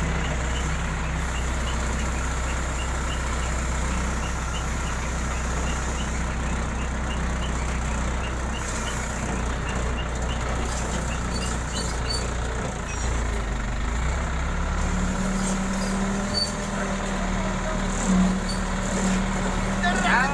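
Engine and hydraulics of a truck-mounted log crane running steadily under load as it lifts and swings a bundle of timber logs. The engine note shifts about 13 seconds in and settles into a steadier, higher hum for the last few seconds, with a faint light ticking about twice a second through the first half.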